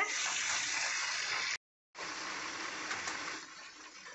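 Chicken pieces sizzling as they fry in oil in an aluminium pressure cooker, with a spoon stirring them. The sizzle cuts off abruptly for a moment about one and a half seconds in, then resumes and dies down near the end.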